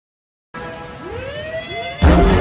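After a moment of silence, a film soundtrack cue comes in about half a second in: a held chord of synth-like tones with two upward pitch glides, building into the background music.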